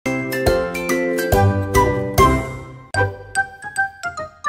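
Children's intro jingle: a quick melody of struck, ringing notes. It pauses just before three seconds in, then goes on with lighter, higher notes.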